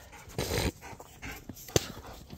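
A dog making a short breathy sound about half a second in, with a sharp click near the end.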